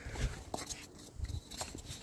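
Wind buffeting the microphone in two low rumbling gusts, with a few faint clicks of handling.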